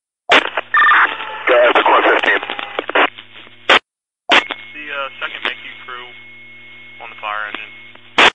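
Fire-radio scanner traffic: two short, unclear radio transmissions, the first loud and rough, the second fainter with a voice in it. Each one opens and closes with a squelch burst, and the channel goes silent for a moment between them.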